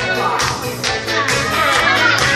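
Live music played on an electronic keyboard, with a beat.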